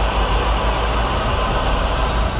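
Film soundtrack sound design: a loud, steady low rumble under a dense wash of noise, with no speech and no clear melody.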